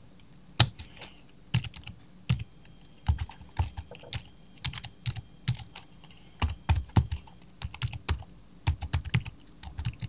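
Typing on a computer keyboard: uneven runs of keystrokes with short pauses between them, the sharpest key hit about half a second in.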